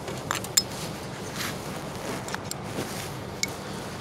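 A few light, scattered clicks and scrapes of a poker against a Honda Civic steering wheel lock assembly, over a steady low hum.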